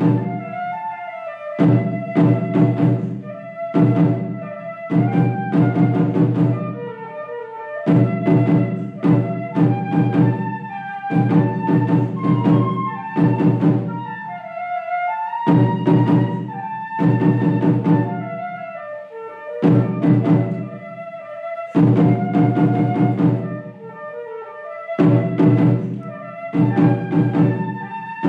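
Live flute and drum duo. A flute plays a melody over runs of resonant drum strokes struck with sticks, each run about two seconds long with short pauses between.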